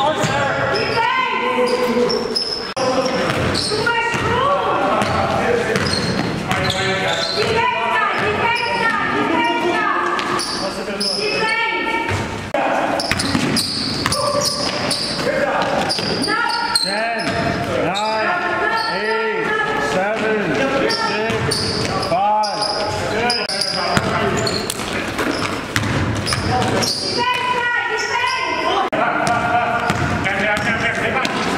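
Live court sound of an indoor basketball game: a basketball bouncing on a wooden gym floor amid players' voices, all echoing in a large gym.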